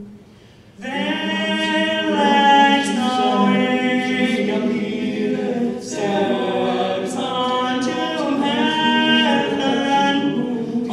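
Male a cappella ensemble singing in close harmony into microphones, with long held chords. After a brief pause at the start, the next phrase enters just under a second in, with a short break between phrases about six seconds in.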